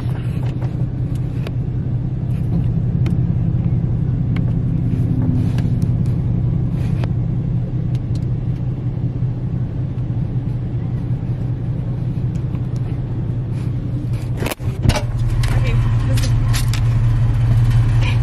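A car engine idling, heard from inside the cab as a steady low rumble. There is a single sharp thump about fifteen seconds in.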